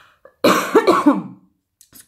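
A woman coughing into her hands: one loud coughing fit that starts about half a second in and lasts about a second.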